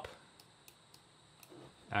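A short near-quiet pause in a man's narration, with a few faint, sharp clicks. Speech resumes near the end.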